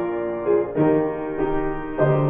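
Piano playing a hymn in slow, sustained chords, a new chord about every half to three-quarter second.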